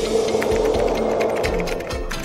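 Music with a busy, rapid clicking running over a steady held tone.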